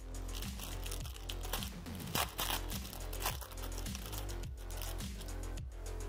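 Background music with a steady low beat, under paper crinkling and a tearing noise about two seconds in: a trading-card pack wrapper being torn open and handled.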